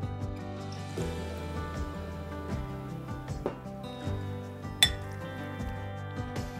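Light clinks of a metal fork against a ceramic bowl as shredded meat is mixed with broth, over steady background music. One sharp clink, a little before five seconds in, is the loudest.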